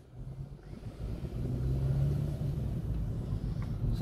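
Car engine and road rumble heard from inside the moving car's cabin. It grows louder about a second in as the engine note rises slightly, then holds steady.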